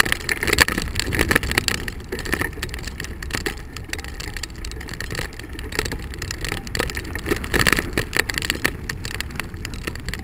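Bicycle rolling over a rough gravel and dirt path: steady tyre crunch and rumble with frequent rattling knocks as it goes over bumps.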